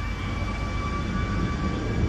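Jet airliner engines running on the apron: a steady low rumble with a constant high whine.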